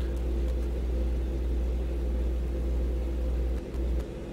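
A deep, steady low rumble from the music video's soundtrack, with a faint hum above it; the rumble cuts off shortly before the end.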